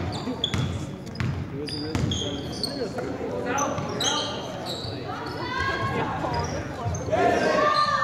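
Basketball game in a gym: a ball bouncing on the hardwood court and sneakers giving short, high squeaks, with indistinct shouts from players and spectators echoing in the hall.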